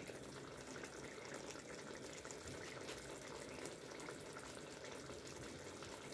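Meat and potato curry simmering in a steel pot: a faint, steady bubbling.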